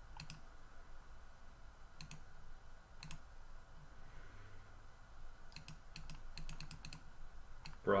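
Computer mouse clicks: a few single clicks, then a quick run of about ten clicks about six seconds in, as a drop-down list is opened and scrolled.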